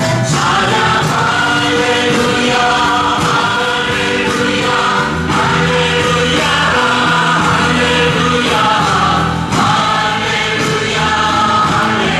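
A choir singing a Christian worship song over instrumental backing music, steady throughout.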